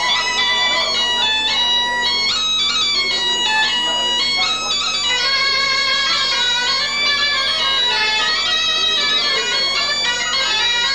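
Breton treujenn-gaol clarinet and bagpipe playing a traditional tune together, the reedy melody moving in quick steps without a break.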